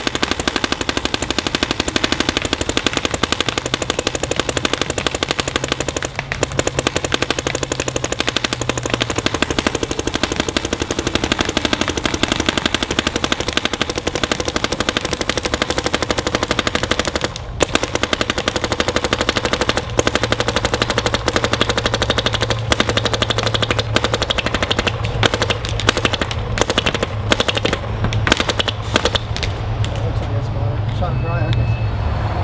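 Dye DM13 electronic paintball marker firing rapidly and continuously, a fast stream of sharp pops from the compressed-air shots. It is being shot through pod after pod of paint on one air tank to test its gas efficiency, with two brief breaks in the firing. The shots grow sparser and irregular near the end.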